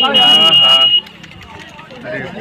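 A loud, steady, high-pitched electronic alarm buzzer sounding under people shouting, with both cutting off suddenly about a second in. Only faint voices remain after that.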